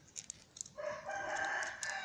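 A rooster crowing: one long call beginning about three-quarters of a second in, after a few light clicks near the start.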